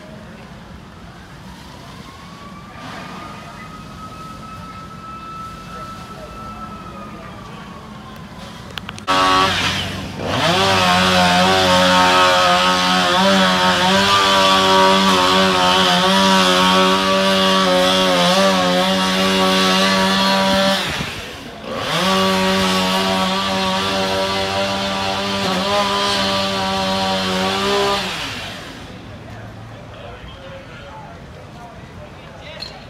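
A small engine starts abruptly about nine seconds in and runs at high speed, its pitch sagging and picking back up twice, then dies away near the end.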